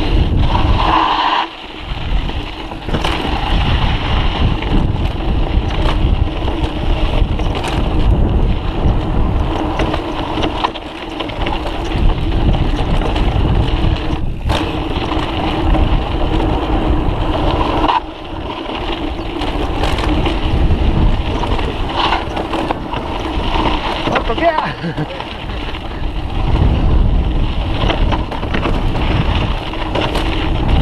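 Mountain bike on a fast, rough dirt descent: wind rushing over the microphone, tyres on the trail, and frequent knocks and rattles from the bike.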